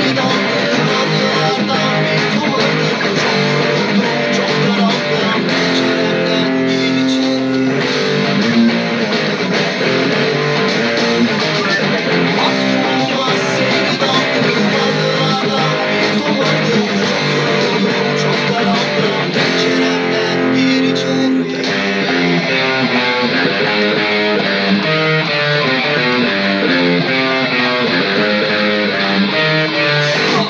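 Cort electric guitar played along with a rock backing track of the song, the guitar and band filling the whole stretch at a steady, loud level.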